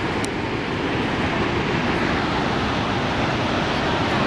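Steady roar of Niagara Falls' falling water, an even, unbroken rush with no distinct events.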